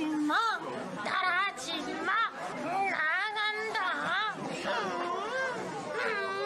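Young men talking playfully in high-pitched, sing-song voices that swoop up and down in pitch, one copying the other's cute, cartoony voice.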